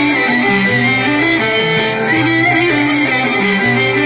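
Live Greek folk band playing a dance tune without singing: a lead melody moving in short stepped notes over plucked-string accompaniment, loud and continuous.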